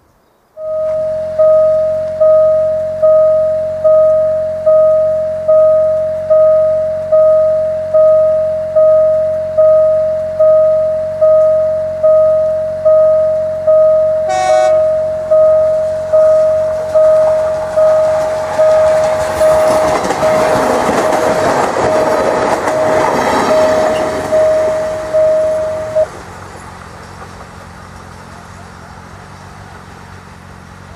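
An electronic railway warning bell, as at a level crossing, rings in a steady pulse a little faster than once a second while a train passes. A short horn toot sounds about halfway through, and the passing train's rush of noise peaks in the latter half. The bell cuts off suddenly a few seconds before the end, leaving a lower steady rumble.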